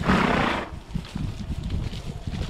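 A horse gives one short, noisy snort in the first second, without a clear pitch, then its hooves go on walking over the soft trail in low, irregular thumps.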